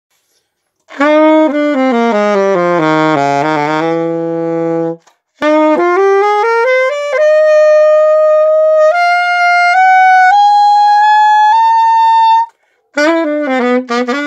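Grassi AS300 alto saxophone being test-played: after a second of silence, a phrase that sinks into the horn's low notes, a quick run upward, then a slow climb of about half a dozen held notes, each a step higher, with playing starting again near the end. It shows the instrument working and in tune across its range.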